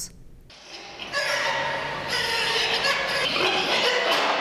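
Pigs squealing continuously, several high cries overlapping, starting about a second in.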